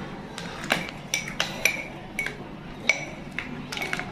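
Kitchen utensils clinking against an enamel pot while thin batter is stirred: about a dozen light, irregular taps with a short ring.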